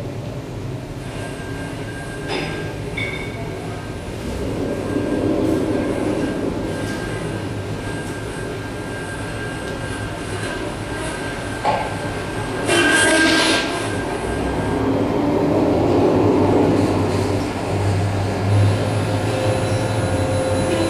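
Live experimental electroacoustic music built from field recordings and processed radio: a dense, rumbling noise bed with a low hum and thin steady high tones, and a brief hissing burst about two-thirds of the way through.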